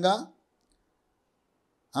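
A man's voice trailing off at the end of a phrase, then near silence, room tone only, for about a second and a half before he speaks again.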